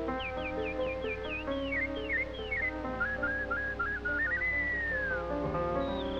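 Early-1930s cartoon orchestral score with a high whistled line on top: a quick run of short falling chirps in the first second and a half, then a warbling trill and one long arching whistle that rises and falls away.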